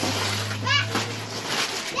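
Gift wrapping paper rustling and tearing as children rip open presents, with a child's short high call about halfway through.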